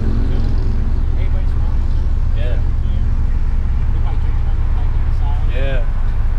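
Stock JDM Honda B20B non-VTEC four-cylinder idling steadily through a Vibrant aftermarket exhaust, heard from inside the Civic's cabin. Brief voice sounds come twice over the engine's low steady drone.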